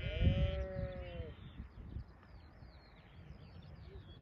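A sheep bleats once near the start: a single long, arched call lasting about a second. Faint high chirps and a low rumble of wind follow.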